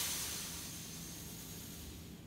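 A man's long, forceful exhale through pursed lips: a steady hiss, loudest at first and tapering off over about two seconds. The breath is blown out hard to pull the rib cage down flush with the pelvis before bracing for a squat.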